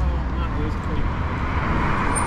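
Road traffic noise on a city street: a low rumble that stops about half a second in, then the tyre and engine hiss of a passing vehicle growing louder toward the end.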